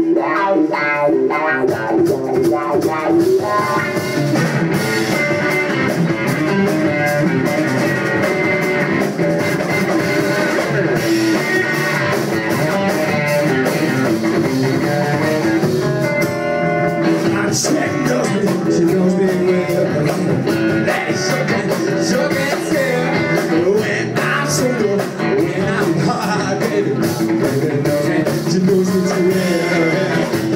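Rock band playing live, with electric guitars over drums, loud and steady throughout.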